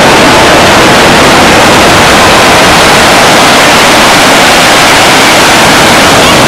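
Loud, steady static-like hiss, overloaded at full scale, with no rise or fall in it.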